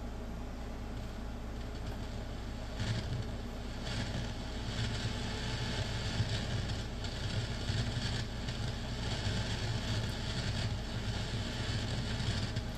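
Radio static from an SDRplay receiver running SDRuno, tuned to 3.5 MHz and played through speakers. A steady noisy hiss with a low rumble comes in about three seconds in, when the receiver starts, over a low mains-like hum.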